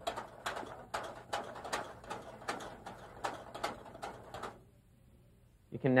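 Wire whisk beating hazelnut custard sauce in a copper saucepan. The wires strike the pan in a quick, even rhythm of about two to three strokes a second, which stops about four and a half seconds in. The sauce is being whisked off the heat to cool it so it stops cooking.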